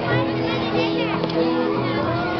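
A crowd of young schoolchildren chattering and calling out over background music with held notes.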